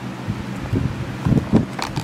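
A dog nosing and pushing the plastic cups of a Kyjen dog puzzle. There is a rustle of light plastic knocks and clicks, with a cluster of sharper knocks past the middle.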